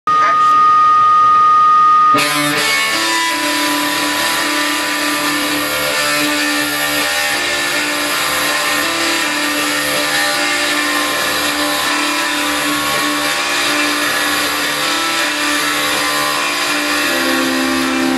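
Electric guitars playing a slow, sustained intro without drums, the held notes changing pitch every second or so. It opens with a loud, steady high tone for about two seconds.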